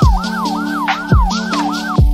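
Ambulance siren in yelp mode, its pitch sweeping rapidly up and down about three times a second, over background music with a heavy beat.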